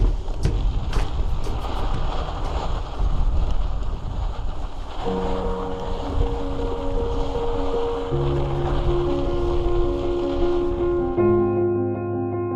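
Wind rushing over the microphone of a camera on a moving mountain bike, with a few sharp clicks in the first couple of seconds. Background music runs under it, with held keyboard chords from about five seconds in and piano notes near the end as the wind noise stops.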